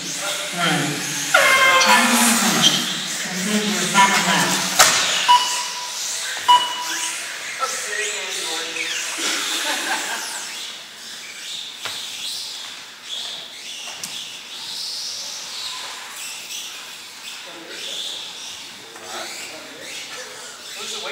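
Voices in a large gym hall, loudest in the first few seconds, with three short beeps and a sharp click a few seconds in; quieter chatter after about ten seconds.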